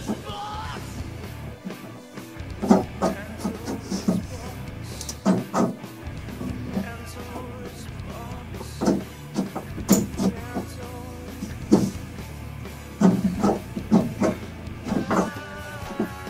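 Rock music playing in the background, with irregular short, sharp hits through it.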